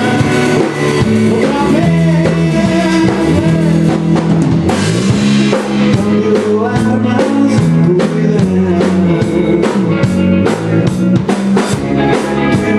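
Live rock band playing mid-song: electric guitars and bass over a drum kit. The drum and cymbal strikes grow sharper and busier about halfway through.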